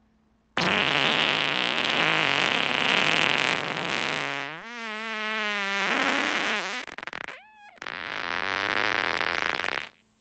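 A long human fart. It starts abruptly with a loud airy blast, turns into a buzzing pitched tone in the middle, gives a brief squeak, then breaks off after a last airy stretch.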